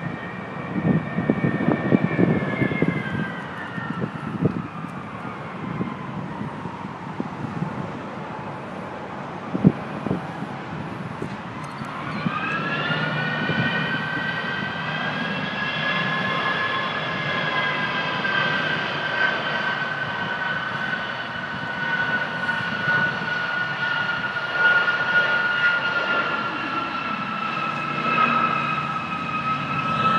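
Jet engines of a large military transport aircraft flying low: a high turbine whine falls away in pitch over the first few seconds. About twelve seconds in, a new whine comes in and holds, slowly sinking in pitch, over a steady low rumble.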